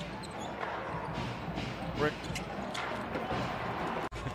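Live basketball game sound on the court: steady arena background noise with the ball bouncing on the hardwood floor, and a single word from the commentator about two seconds in.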